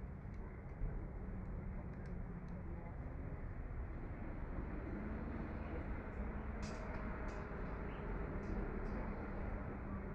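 Steady rush of wind and choppy seawater, with a low rumble and a few faint ticks.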